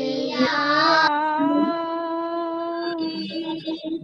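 A single voice singing in a singing lesson heard over a video call: a short rising phrase, then one long held note with a slight waver that stops just before the end.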